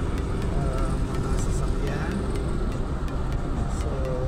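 Car driving on a road, heard from inside the cabin: a steady low rumble of engine and tyre noise.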